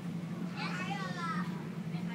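A child's high-pitched voice calling faintly in the background for about a second, over a steady low hum.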